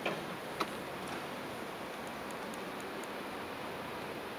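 Steady railway-station background noise, a soft even hiss, with two sharp clicks in the first second and a few faint high ticks a little later.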